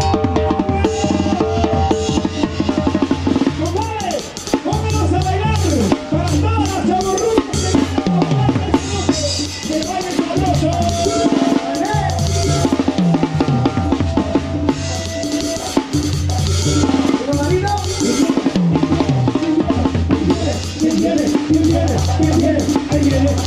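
A tarolero playing a set of banda tarolas and cymbals from up close: fast, dense rolls and strikes on the drum heads with cymbal crashes. Underneath runs a live banda's brass, with sliding wind lines and a repeating low bass pattern.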